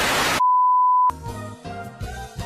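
A TV-static transition effect: a short burst of loud hiss, then a steady single-pitch beep of the kind played with colour bars, cut off after well under a second, and then background music.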